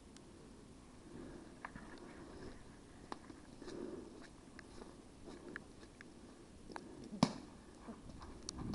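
Quiet footsteps and rustling through leaves and brush as a player moves on foot, with scattered faint sharp clicks and one louder click about seven seconds in.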